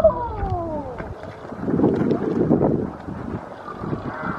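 Domestic pigs grunting as they feed, with a falling squeal near the start and a louder stretch of rough grunting about two seconds in.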